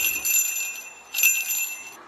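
A child's toy hand-bell ring, small metal jingle bells on a wooden handle, shaken twice. The first jingle fades out in the first moments and the second rings for most of a second, starting about a second in.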